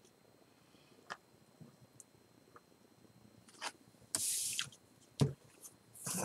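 A person quietly sipping beer from a glass: faint mouth and lip clicks, and a short breathy hiss about four seconds in.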